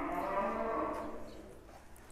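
One long moo from a large bull or cow, fading away about a second and a half in.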